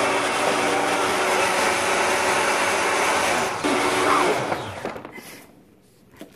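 Countertop blender running steadily as it blends a frappé, with a brief break about three and a half seconds in, then spinning down and stopping near the end.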